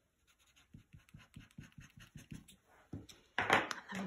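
Glue pen tip rubbing over die-cut paper snowflakes on card: a quick run of short scratchy strokes, about four or five a second. A woman's voice begins near the end.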